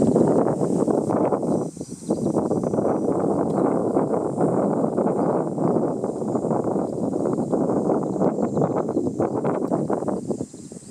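A loud, dense crackling rustle close to the microphone, full of fine clicks, that starts suddenly, dips briefly just before two seconds in, and falls away at the end.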